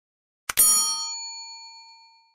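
A click about half a second in, followed at once by a bright bell chime of several tones that rings out and fades over about a second and a half: the notification-bell ding sound effect of a subscribe-button animation, marking the bell being switched on.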